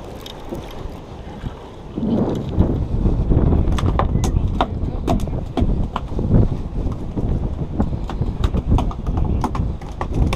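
A freshly landed ladyfish flopping on a wooden pier deck: a run of sharp, irregular knocks and slaps through the second half, over a low wind rumble on the microphone.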